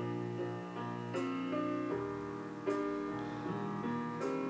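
Instrumental music playing back from a CD on a Sansui CD-X217 player, a few seconds into track 8, with new notes entering every second or so.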